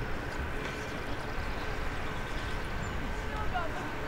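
Outdoor lacrosse-field ambience: a steady low rumble with a faint steady high tone, and faint, distant voices of players calling, a few short calls near the end.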